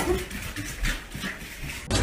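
A small puppy's sounds with scattered light taps on a tiled floor, cutting off suddenly just before the end.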